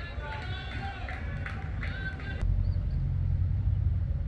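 Distant voices of players calling on an open cricket field, with wind rumbling on the phone's microphone that grows louder about halfway through. A single short knock comes in the middle.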